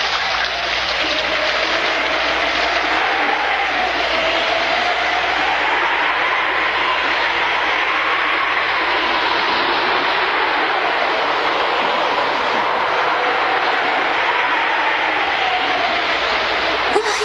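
Storm sound effect: a steady hiss of heavy rain with wind howling over it, the howl slowly rising and falling in pitch.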